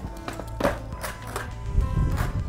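Background music, over which a skateboard is popped and landed on asphalt: a few sharp wooden clacks in the first second and a half, with a low rumble of wheels rolling.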